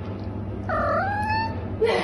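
Domestic cat giving one short meow that dips and then rises in pitch, over a low steady hum.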